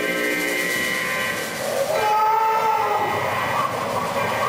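Theatre sound effect: a sustained whistle-like tone, giving way about two seconds in to a rushing noise with a wavering tone, as a burst of stage smoke fills the set.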